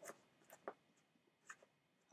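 Near silence with a few short, faint rustles of paper comics being handled.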